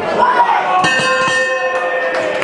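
Boxing ring timekeeper's bell struck once about a second in and left ringing, marking the end of a round, over crowd voices in a large hall.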